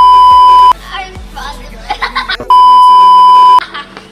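Loud, steady 1 kHz electronic beep tone, the test tone that goes with TV colour bars, sounding twice for about a second each: once at the start and again about two and a half seconds in. Children's voices and laughter come in between the beeps.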